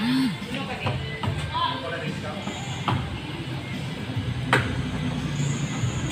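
Indistinct voices over steady background noise, with two sharp clicks about three and four and a half seconds in.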